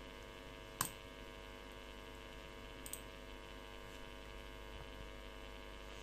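Steady, faint electrical mains hum from the recording setup, with a single sharp mouse click about a second in and a fainter click near three seconds.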